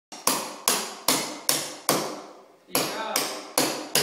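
Hammer blows on a chisel held against a wall, chipping away old mortar, about two to three sharp ringing strikes a second with a short pause around the middle.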